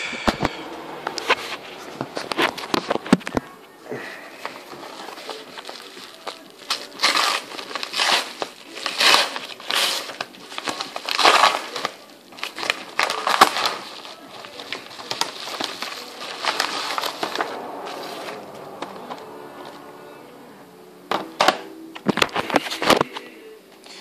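A white mailer envelope being torn open and crinkled by hand: a long run of irregular rips and rustles, with a few sharper crackles near the end as the DVD comes out.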